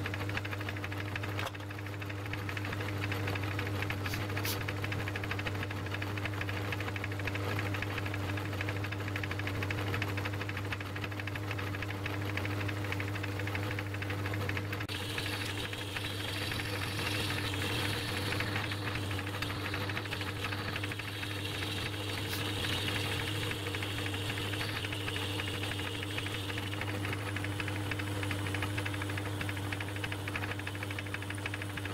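Metal lathe running steadily, its motor and gearing giving an even hum, while a twist drill in the tailstock chuck bores into the spinning workpiece. About halfway through the cutting noise turns brighter and louder as the drill goes deeper.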